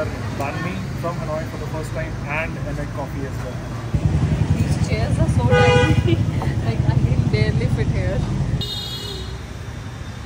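Busy street traffic with an engine rumbling close by for about four and a half seconds in the middle. A vehicle horn gives one short honk near the middle, and a second, higher beep comes near the end, over background chatter.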